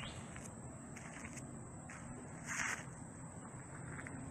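Quiet outdoor ambience: a faint steady hiss with a thin, high, constant tone, and one brief noisy sound about two and a half seconds in.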